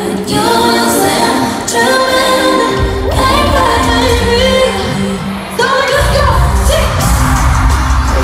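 Pop song with a female lead voice and a backing track. A heavy bass beat enters about three seconds in, drops out briefly just before six seconds, and comes back.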